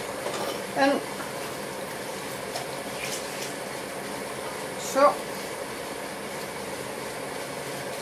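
Steady rushing background noise with a faint hum under it, as of a kitchen fan or appliance, with a couple of faint light clicks about two and a half and three seconds in.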